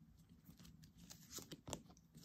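Near silence with a few faint, soft rustles and clicks of tarot cards being handled and drawn from the deck.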